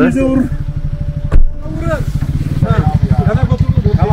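A small engine running with a rapid, even pulse that grows louder about two and a half seconds in, with one sharp knock about a second and a half in. Men talk over it.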